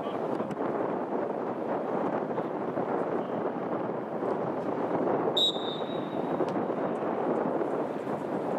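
Steady outdoor background noise at a football pitch, with one short, high referee's whistle blast about five seconds in.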